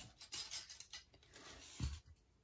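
Clear plastic card stand being handled and set down on the table: light scraping and clicks, with a soft thump near the end.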